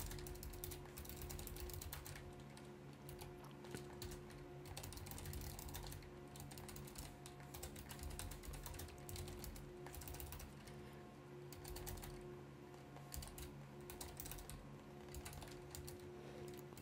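Computer keyboard typing: faint, quick runs of key clicks over a steady low hum.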